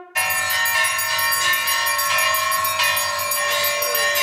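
Temple bells ringing for aarti in a fast, continuous clanging, starting suddenly a moment in.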